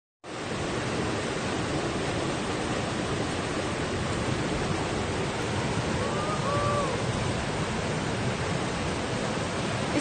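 Steady rushing noise of water, heavy and unbroken, with a brief faint tone about six seconds in.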